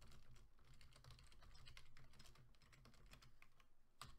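Faint computer keyboard typing: a quick, irregular run of key clicks, over a low steady hum.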